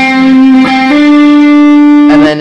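Electric guitar playing a single note on the G string's fifth fret, then a hammer-on to the seventh fret a little under a second in, the higher note held ringing.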